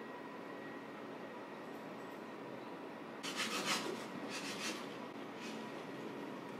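Quiet room tone with a faint steady hum, then, about three seconds in, a few short rubbing, scraping sounds of something being handled in a kitchen.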